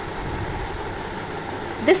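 A steady low background rumble with no clear rhythm or pitch, in a pause between spoken phrases.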